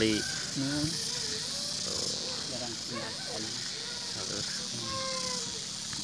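Faint, distant voices talking over a steady high hiss.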